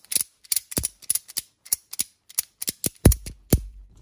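Steel ratchet-strap buckle being worked by hand: its pawl clicks over the toothed wheel in quick runs as the handle is pumped, winding the webbing tight on the spindle. Two louder clacks come near the end.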